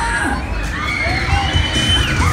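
Riders on a swinging fairground thrill ride screaming together over crowd noise, with one long high scream held near the end.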